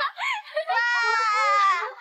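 A young woman's high-pitched cry of delight: a short gliding exclamation, then one long drawn-out joyful call.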